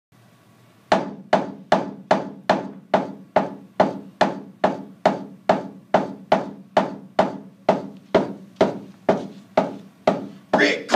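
A steady run of hard knocks, about two and a half a second, each ringing briefly. They start about a second in, like a tool striking the surface overhead in mock mining.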